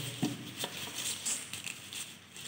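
White plastic wrapping rustling as it is pulled off a CCTV camera by hand, with a few light clicks and knocks from the handling.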